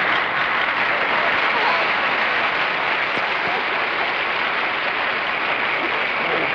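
Studio audience applauding steadily as a panelist is introduced.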